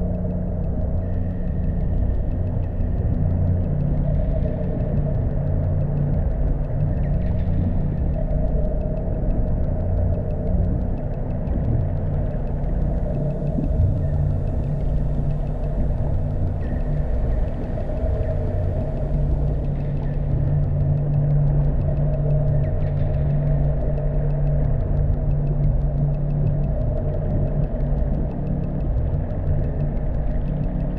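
Ambient drone soundtrack of a video artwork: a steady low rumble with several held tones layered over it, slowly swelling and easing.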